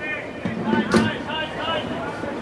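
Indistinct shouting voices of lacrosse players and spectators across an outdoor field, with a single sharp knock about a second in.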